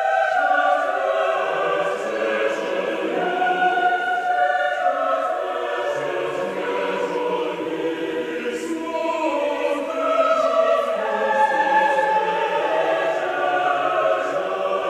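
Classical choral music: a choir singing slow, held chords that shift every second or two.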